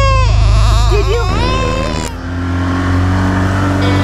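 Toddler crying in wavering wails over a low steady rumble. About halfway through the crying stops and music with held tones comes in.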